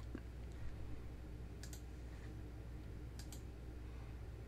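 Two computer mouse clicks about a second and a half apart, each a quick double snap of press and release, over a faint steady low hum.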